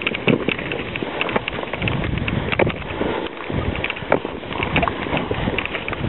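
Skis sliding and scraping over packed snow, with irregular crunches and clicks and wind buffeting the microphone.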